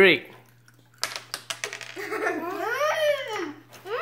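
A child's drawn-out 'mmm' while tasting a jelly bean, one long hum that rises in pitch and falls again. About a second in there is a short run of small clicks.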